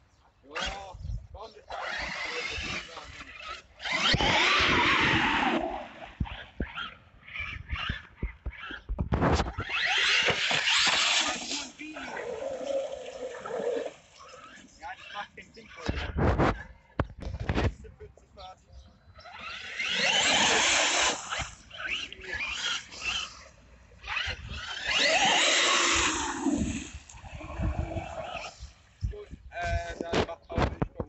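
Radio-controlled monster truck running through a muddy puddle: its electric motor whines in several bursts of a second or two each, with water splashing.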